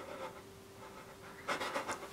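A person breathing hard, several short quick breaths close together starting about one and a half seconds in, over a faint steady hum.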